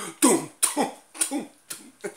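A man laughing: a run of short breathy bursts of laughter, getting fainter toward the end.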